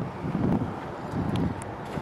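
Wind rumbling on the microphone of a hand-held camera outdoors, with a few soft swells and faint clicks.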